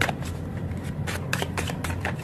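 Tarot deck being shuffled: a quick, irregular run of sharp card flicks and snaps over a steady low hum.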